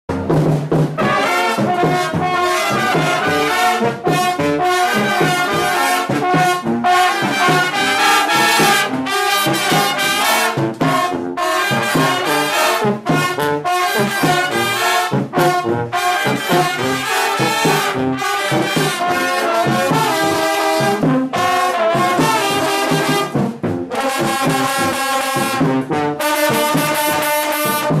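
School band brass section — trumpets, trombones and a sousaphone — playing a tune together in quick, detached notes, with brief breaks between phrases.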